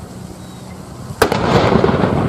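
A field gun fires a single blank round about a second in: a sharp crack followed by a long rolling rumble.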